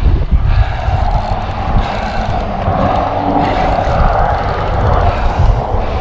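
Spinning reel's drag buzzing steadily for several seconds as a hooked tarpon runs line off the reel, fading out near the end, over a low rumble.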